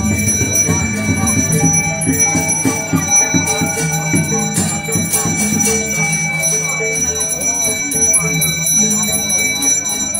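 A bell ringing steadily without a break, its high ringing tones held throughout, over the sound of a crowd's voices and lower sustained musical tones.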